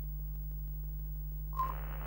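Steady low electronic hum of an old-television end-card sound effect. About one and a half seconds in, a brief beep opens a short burst of static as the picture glitches.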